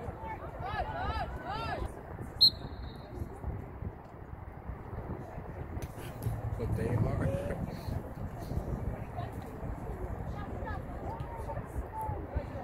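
Sounds of a soccer match heard from the sideline: voices calling out across the field over a steady murmur. One short, sharp referee's whistle blast about two and a half seconds in is the loudest sound.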